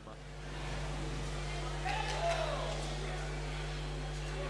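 Faint background noise of a robotics competition hall under a steady low hum, with a brief distant voice about two seconds in.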